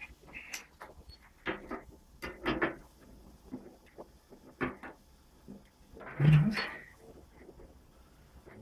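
Irregular light taps and knocks of a hand hammer and tools on galvanized steel sheet flashing: a dozen or so short strikes at uneven intervals, the loudest about six seconds in.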